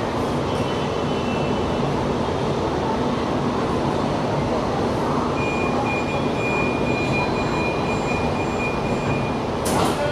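Inside a metro carriage stopped at a platform: a steady hum from the carriage. About halfway through, a high electronic beeping tone sounds for about four seconds, typical of the door-closing warning. Just before the end there is a sharp knock, as of the doors shutting.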